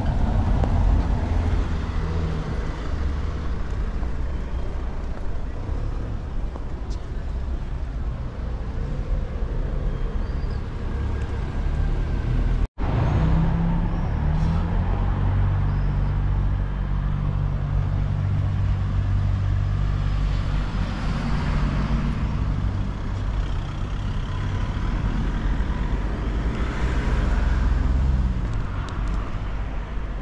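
Street traffic: cars passing on a cobbled road, under a steady low rumble. The sound drops out for an instant about 13 seconds in.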